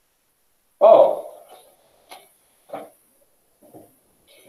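A brief wordless vocal sound, a pitched hoot-like 'ooh' about a second in that dies away over a second, followed by three faint clicks.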